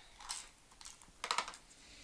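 Paper scraps and an adhesive tape runner handled on a tabletop: a short rasp about a quarter second in, then a quick cluster of light clicks a little past the middle.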